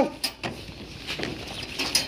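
Faint scattered clicks and rustling from a wire dog cage and woven plastic sack being handled as a puppy is pushed in, following the end of a spoken word at the very start.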